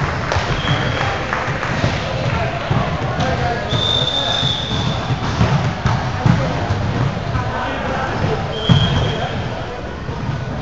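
Indoor volleyball game in an echoing gym: a constant din of players' and spectators' voices, with sharp thuds of the ball being hit and bounced. Three brief high squeaks come through, one near the start, a longer one about four seconds in, and one near the end.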